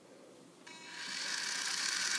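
Air Hogs Hyperactives 5 RC stunt car's small electric motors and gears whirring as all its wheels spin. The whir starts about half a second in and grows steadily louder.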